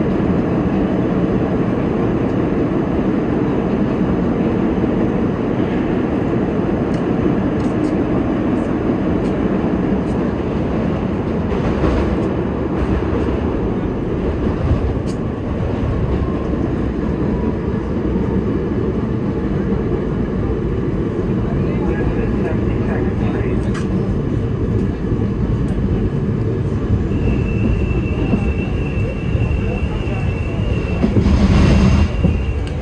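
Budd R32 subway car heard from inside, running through the tunnel with a loud steady rumble of wheels on rail and scattered clicks as it slows into a station. A steady high squeal comes in near the end.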